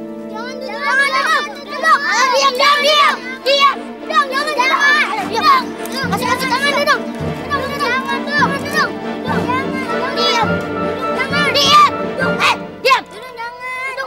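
Several children's voices shouting and chattering at once, high and overlapping, over a steady background music bed.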